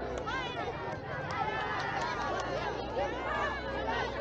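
Many children chattering and calling out over one another, high young voices blending into a crowd babble.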